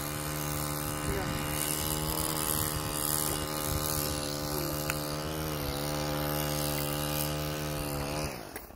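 An engine running at a steady speed with a continuous humming drone; its pitch dips slightly a little after five seconds.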